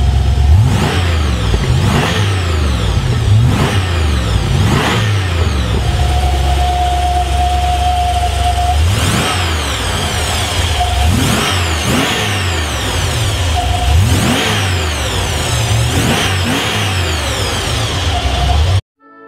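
Vector W8's twin-turbo 6-litre V8 being revved in repeated quick blips, each rising and falling in pitch, with a steadier held rev from about six to nine seconds in.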